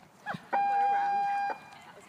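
A single steady, high beep, held for about a second and cut off sharply.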